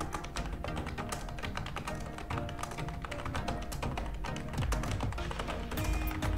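Rapid clicking of computer keyboard keys being typed on, over steady background music.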